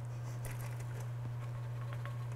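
Broth dripping and trickling faintly from a tilted pot into a metal colander, with a few small ticks over a steady low hum.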